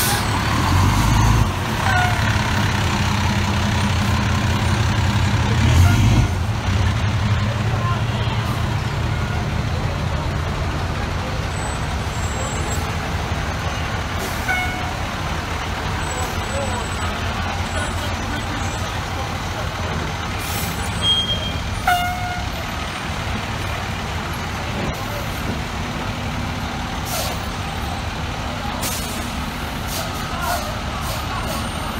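Diesel engines of FDNY fire trucks running as the apparatus pulls away. The rumble is heaviest in the first six seconds as a Seagrave tower ladder drives past, drops off abruptly, and then settles into a steadier, lower rumble.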